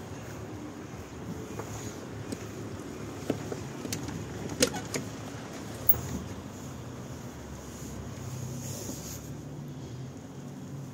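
A few sharp metallic clicks and a clunk, the loudest about four and a half seconds in, as a tractor cab door is opened and someone climbs into the cab. A steady low hum runs underneath.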